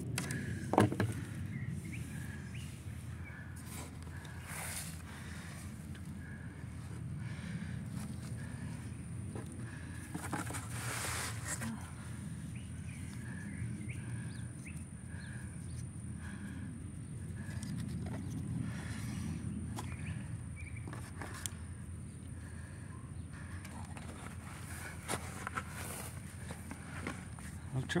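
Outdoor background with a steady low rumble and a faint thin high tone, broken by a few brief knocks and rustles of wooden fire-drill gear being handled, about a second in, near five seconds and near eleven seconds.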